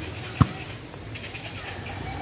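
A volleyball being struck hard by hand: one sharp smack about half a second in, over a faint outdoor background with light high chirping.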